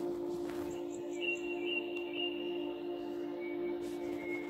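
Ambient background music: a steady low drone like a singing bowl, with a few short high chirps about a second in and thin high held tones over it.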